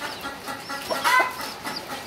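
Young chicks peeping, a string of short high cheeps, with a louder, lower sound about a second in.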